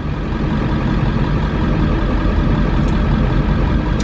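Van engine idling, a steady low running sound heard from inside the cab.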